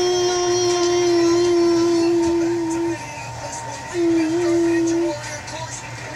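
A child's voice holding one long, steady sung note for about three seconds, then after a short pause a second, shorter note with a slight dip in pitch.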